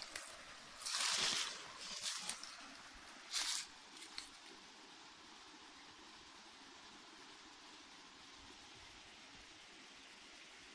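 Footsteps and brushing through dry forest leaf litter: four or five short rustling bursts in the first four seconds. After that, a steady faint hiss.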